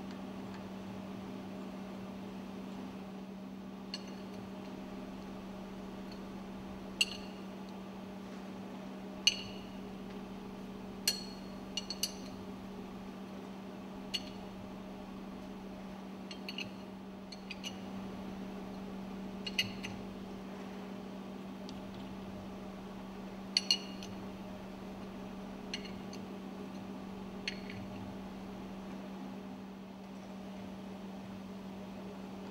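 A dozen or so sharp metallic clinks at irregular intervals as steel dismantling screws and a hand tool knock against the steel fuel pump top cover, two of them in quick succession late on. A steady low hum lies underneath.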